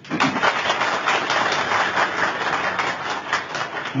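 Audience applauding: dense, steady clapping that stops abruptly at the end.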